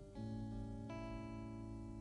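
Quiet background music: soft held chords, changing once near the start and again about a second in.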